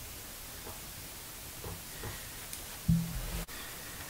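Steady low hiss with faint soft handling noises from a thin headset-microphone cable being untangled by hand. About three seconds in there is a brief low-pitched sound that cuts off suddenly.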